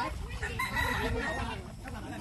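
One long, held animal call lasting under a second, starting about half a second in.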